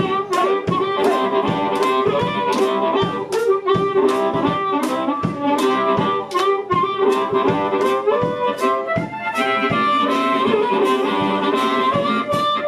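Live blues band playing: a harmonica played cupped and amplified carries the lead over upright bass, electric guitar and a drum kit keeping a steady beat.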